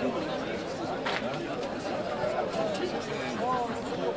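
Several overlapping voices talking and calling out at once around a rugby pitch. The voices are indistinct and no single one stands out.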